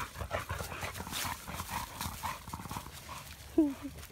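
A stocky American Bully dog panting hard in quick, irregular breaths.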